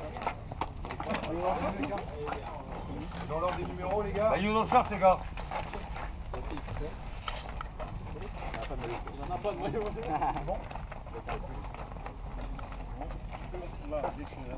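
Men's voices chatting and calling out indistinctly among a group of football players, with one loud shout about four to five seconds in. Scattered sharp clicks of studded football boots on a concrete path.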